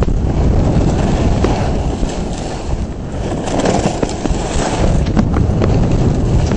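Strong wind rumbling over the microphone together with skis scraping and chattering over groomed corduroy snow on a downhill run, with scattered short scratchy clicks.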